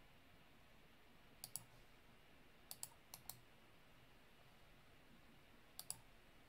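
Computer mouse clicking about seven times, mostly in quick pairs, over near silence.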